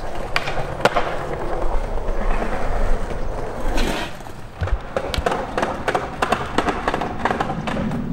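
Skateboards rolling on concrete, with repeated sharp clacks of decks and wheels hitting the ground and steps. The clacks come thick and fast in the second half.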